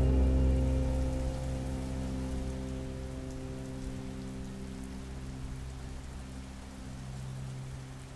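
Rain falling on a window pane, under a low sustained music chord that fades away.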